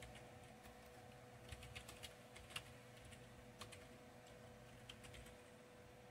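Faint computer keyboard keystrokes: irregular soft clicks as a command is typed, the sharpest about two and a half seconds in. A faint steady hum sits underneath.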